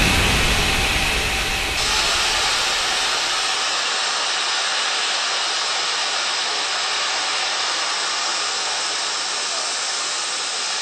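Steady loud rushing hiss of rocket-belt jet thrust, a sound effect for a lift-off. It loses some of its top end about two seconds in and its low rumble fades about four seconds in, leaving an even hiss.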